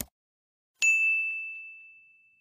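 A short pop at the very start, then about a second in a single bright bell ding that rings on one clear pitch and fades slowly. It is a notification-bell sound effect for a subscribe-button animation.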